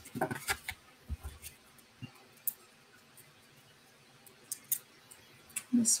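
Cardstock and small paper pieces being handled on a craft table: scattered light clicks and rustles, most of them in the first second and a half, with a few more later.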